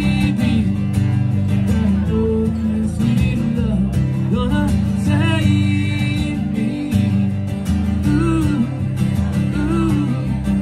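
Live acoustic guitar strumming over an electric bass guitar line, a small duo playing country-rock.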